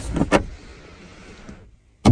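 Two quick plastic clicks as a hand handles the centre-console storage tray in a car cabin, followed by a faint steady hiss that cuts off shortly before the end.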